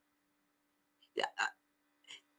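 Two short, sharp vocal sounds from a woman, a quarter second apart, a little over a second in, between quiet pauses.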